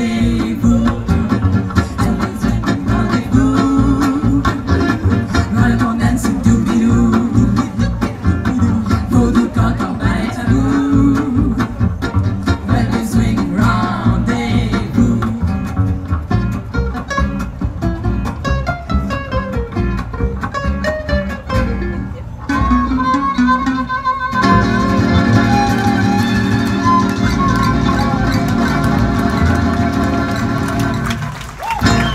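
Live instrumental passage from an acoustic gypsy-jazz quartet: two acoustic guitars strumming with upright bass and violin. Near the end the band thins to a single high held note, then plays long held chords.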